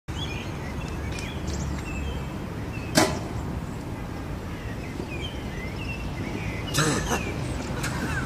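Outdoor city-park background: a steady low rumble of distant traffic with small birds chirping, a single sharp snap about three seconds in, and a short noisy burst near the end.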